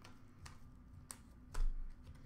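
Trading cards being handled and laid down: a couple of faint clicks, then a louder knock about one and a half seconds in.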